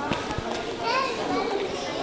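Children's voices over the steady background hubbub of a busy shopping mall.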